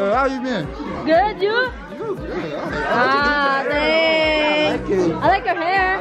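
Several people talking and calling out over one another at close range, with one voice held in a long drawn-out call about three seconds in.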